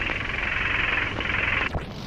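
Steady hiss with scattered crackles over a low rumble, like a rain-and-static noise bed in a lo-fi synth track's intro. It cuts out with a short glitchy sweep near the end.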